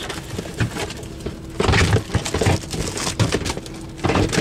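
Rustling, scraping and knocking as a portable 12-volt stove that is wedged into a crammed storage corner is pulled out past packaged paper plates, with a louder burst of scraping about halfway through.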